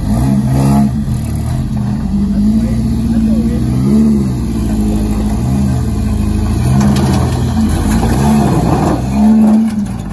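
A lifted off-road pickup's engine revs in repeated surges as the truck crawls up a rock ledge. The throttle blips rise and fall every second or so.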